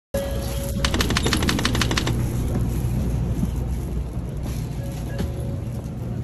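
Steady low rumble of a Shinkansen train car. About a second in there is a short run of rapid sharp clicks, roughly ten a second, and a brief steady tone comes just before it.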